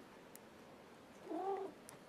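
A cat meows once, a short call rising and falling in pitch about a second and a quarter in. A few faint ticks of metal knitting needles sound around it.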